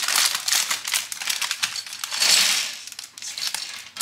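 Thin plastic LEGO parts bag crinkling as it is torn open and handled, with small plastic bricks spilling out and clicking onto a table. The loudest crinkle comes about two seconds in.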